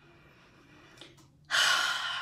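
A woman's sharp, audible breath in, starting suddenly about one and a half seconds in, just before she speaks.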